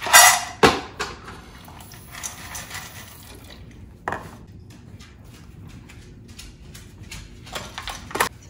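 Dry dog kibble poured into a stainless steel bowl, rattling loudly for about half a second, followed by a sharp knock and scattered light clinks of the metal bowl. Near the end, a metal spoon clatters in the bowl.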